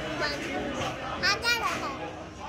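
A toddler's high-pitched excited squeals, a few short ones close together about a second and a half in, the loudest sound here, over people's voices talking.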